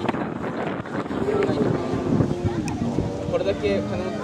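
Indistinct chatter of bystanders' voices, with wind buffeting the microphone.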